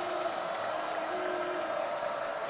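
Steady crowd noise from a football stadium, an even wash of many voices with a faint held tone about halfway through.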